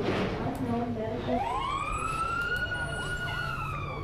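Fire engine siren winding up: one wail that rises steeply about a second in, then holds and slowly falls.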